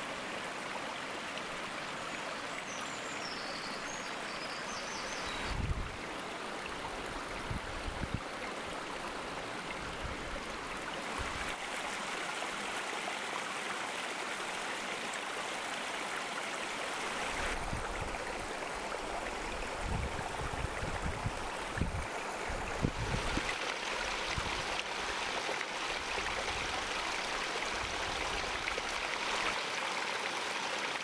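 Small forest stream running and trickling over mossy rocks: a steady rush of flowing water. A few low bumps come through in the middle and latter part.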